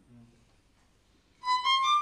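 Near silence, then about one and a half seconds in a violin comes in on a high held note, stepping up a little just before the end. The playing is judged "not free" by the teacher right afterwards.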